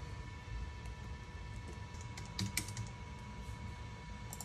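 A short run of keystrokes on a laptop keyboard, clustered about two to three seconds in, over a faint steady whine.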